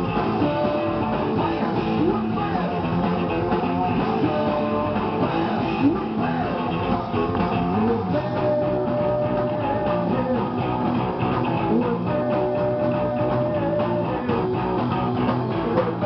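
Live punk rock band playing at steady full volume: electric guitar, bass guitar and drums, with the singer's vocal over them.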